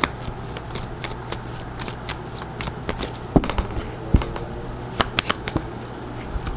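A deck of oracle cards being shuffled by hand: a steady patter of soft card flicks, with a few sharper snaps in the middle and toward the end.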